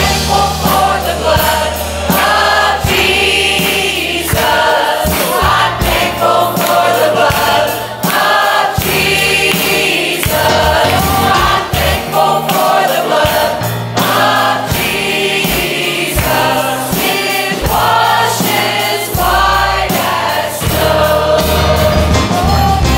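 Mixed church choir singing, with instrumental accompaniment carrying sustained low bass notes and a regular beat.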